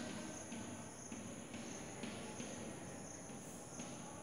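Chalk scratching on a blackboard as a word is written: short scratchy strokes, one about every half second, over a faint steady high-pitched tone.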